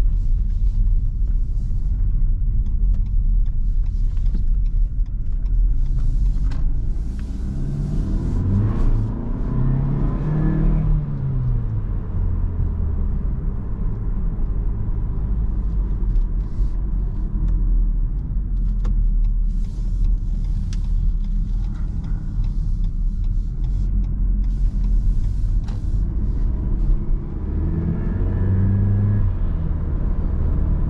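Mitsubishi ASX II's 1.3-litre four-cylinder petrol engine heard from inside the cabin under a steady road and tyre rumble. The engine note climbs as the car accelerates, drops about ten seconds in as a gear is changed, and climbs again near the end.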